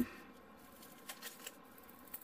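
Faint handling sounds from small strips of XPS foam board glued with UHU Por, turned and flexed between the fingers while the joint is tested: a soft rustle with a few light ticks and creaks.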